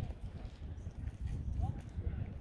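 Wind buffeting the microphone: a gusty, uneven low rumble.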